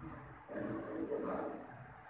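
A faint, low man's voice, starting about half a second in and trailing off before the end: a quiet murmur or drawn-out filler sound between phrases of speech.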